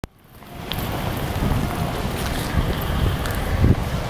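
Wind buffeting the camera microphone: a steady low rumble over street noise, fading in over the first half second, with a louder surge near the end.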